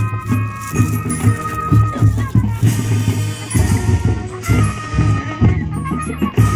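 Marching band playing: brass holding long notes over drumline and front-ensemble percussion with a driving beat.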